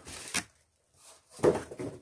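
Handling noises from a piece of cardboard and a folding knife: a couple of small sharp sounds early, a short quiet gap, then a sharp knock about one and a half seconds in.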